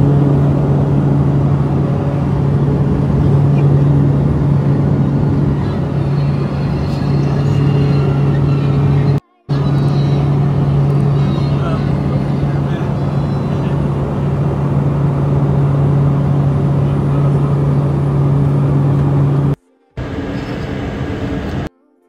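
Steady engine drone heard from inside a passenger cabin, with a constant deep hum. It cuts out briefly twice and runs quieter just before the end.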